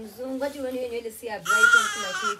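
A baby cries out in a loud, high-pitched squeal starting about one and a half seconds in, after an adult's drawn-out voice.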